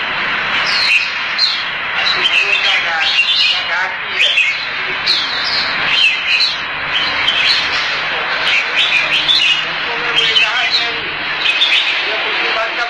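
Red-whiskered bulbuls singing together in a dense chorus of short, overlapping whistled and chirping phrases, with a murmur of voices beneath.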